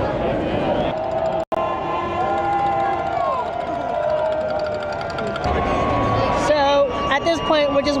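A large street crowd yelling and cheering with horns blowing, several steady held tones sounding over the noise. The sound drops out for an instant about a second and a half in, and nearer voices shout over the crowd in the last couple of seconds.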